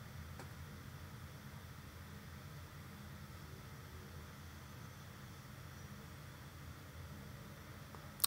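Faint room tone: a steady hiss with a low hum, and one faint click shortly after the start.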